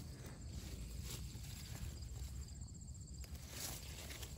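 Tomato plant foliage rustling as a hand reaches in among the leaves and stems to pick tomatoes, with a few faint crackles over a low steady rumble.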